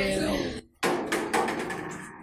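A short voiced sound, then a sudden clattering noise that fades away.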